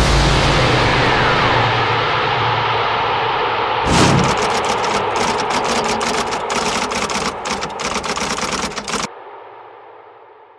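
Sound effect for an animated studio logo: a loud rushing noise with a low rumble, a sharp hit about four seconds in, then a rapid, dense crackling of clicks that cuts off suddenly near the end, leaving a short fading tail.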